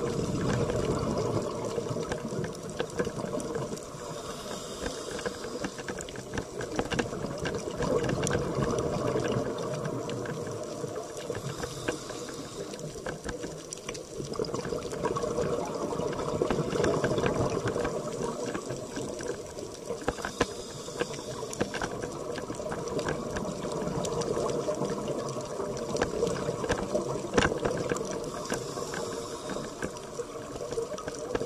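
A scuba diver breathing underwater: exhaled air bubbles up in a swell that rises and fades about every eight seconds, with a short hiss between swells.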